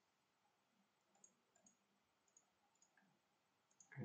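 Near silence with a few faint, scattered clicks from computer use at the desk.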